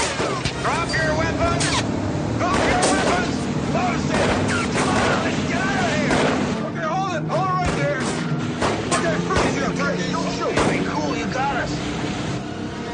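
Film action soundtrack: a string of gunshots fired at intervals, with shouting voices and dramatic music underneath.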